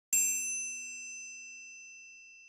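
A single bright metallic chime struck once about a tenth of a second in, ringing on and slowly fading, with a low hum under shimmering high overtones.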